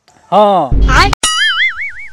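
Cartoon "boing" comedy sound effect: a quavering, wobbling spring-like tone about a second long. Just before it comes a short low thump ending in a click.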